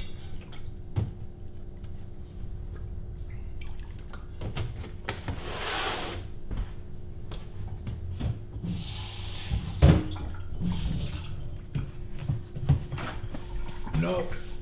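Kitchen sink work: the tap runs in short spells, with scattered knocks of glassware and a loud clunk about ten seconds in.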